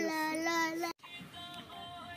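A child's voice holding one long, slightly wavering sung note that cuts off abruptly about a second in, followed by faint music with held tones.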